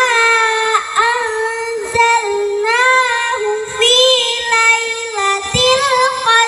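A young girl chanting a short surah of the Quran in melodic recitation into a handheld microphone, holding long notes with ornamented rises and falls in pitch and pausing briefly between phrases.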